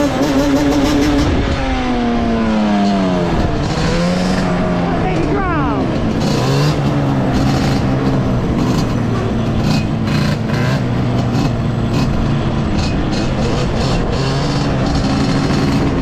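Yamaha Banshee 350 two-stroke twin quad engine under way: its note falls as the quad slows, revs up sharply about five or six seconds in, then holds a steadier low note.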